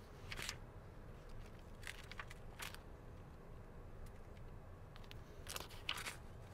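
Quiet, low background noise with a few brief, soft rustles.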